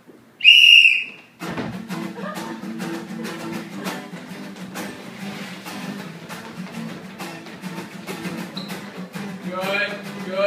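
A sports whistle blown once, loud and warbling, for about half a second. Then an acoustic guitar strums a steady rhythm with many quick footfalls and knocks, and a voice comes in near the end.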